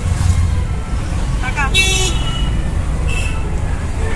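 Auto-rickshaw running in traffic, heard from inside the open cabin as a steady heavy rumble of engine and road noise. A vehicle horn honks about two seconds in, with shorter honks near the end.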